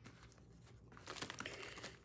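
Clear plastic zip bag crinkling as it is picked up and handled, starting about halfway through.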